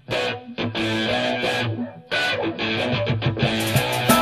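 Song intro on strummed guitar with bass, the chords played in short stops and starts with a brief break about two seconds in.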